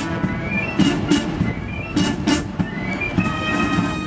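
Military band music played outdoors, with rising glides in pitch and several sharp hits.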